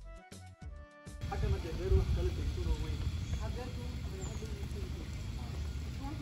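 Background music with plucked notes for about the first second, then a cut to outdoor sound: a strong, uneven low rumble of wind buffeting the microphone, with faint voices under it.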